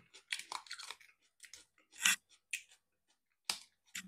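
A person chewing food close to the microphone, in irregular short bursts, with the loudest about two seconds in and again about three and a half seconds in; the food is marinated onion.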